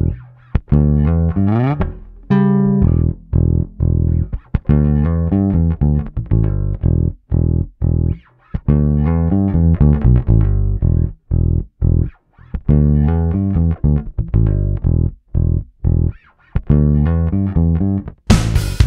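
Electric bass guitar playing a line of short plucked notes with an upward slide near the start, run through a Walrus Audio Mira optical compressor pedal while its release control is being adjusted.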